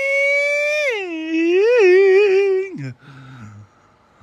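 A single voice holding one long sung note that slides down in pitch about a second in, wavers, and breaks off a little before the end. A faint low voice follows.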